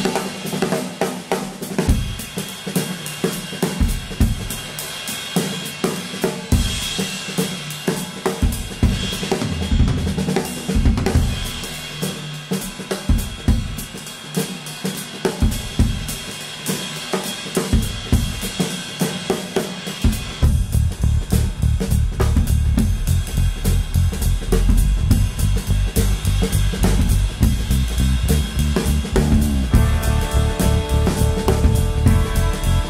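Tama Club-Jam compact drum kit played with sticks: a groove on snare, bass drum, hi-hat and cymbals, broken up by fills. About two-thirds of the way in, a steady low rumble fills in under the strokes.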